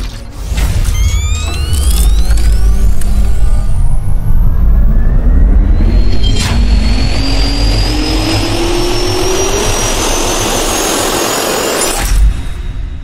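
Sound effects for an animated logo intro: a deep rumble with rising sweeps, like a jet turbine spooling up. There is a sharp hit about six and a half seconds in, and after it a high tone climbs in steps.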